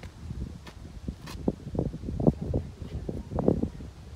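Wind buffeting a phone's microphone: an irregular low rumble that comes and goes in gusts.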